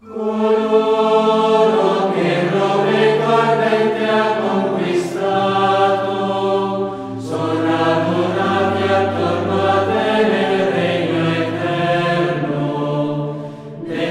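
Choral music: a choir singing long held chords over a slow-moving low bass line, starting abruptly.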